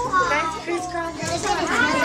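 Young children chattering and exclaiming together, several high-pitched voices overlapping with pitch rising and falling.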